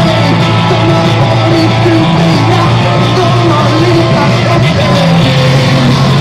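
Live rock band playing loudly, with a steady bass line under guitar and a singing voice.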